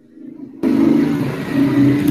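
Loud steady background noise with a low hum under it, picked up through a video-call participant's open microphone. It comes in suddenly about half a second in.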